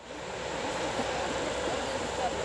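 Steady outdoor din of a poultry and pigeon show: many short bird calls over a constant low rumble.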